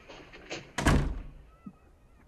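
A heavy wooden front door slammed shut about a second in, with a lighter knock just before it.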